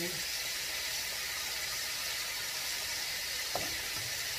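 Breaded chicken legs deep-frying in hot oil in a cast-iron skillet: a steady sizzle, with a single light tap near the end.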